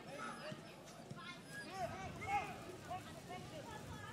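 Faint, distant shouts and calls of footballers on the pitch over low crowd and outdoor background noise, heard through the stream's field microphone.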